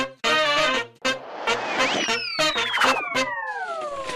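Channel intro jingle: upbeat music with brass hits on a steady beat, then from about halfway through a long falling whistle-like sound effect that slides steadily down in pitch.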